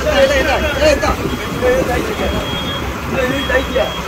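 Men's voices calling back and forth between two fishing boats, over a fishing boat's engine running steadily.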